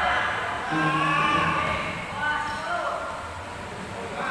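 Indistinct voices calling out, in two stretches about a second in and again past the middle.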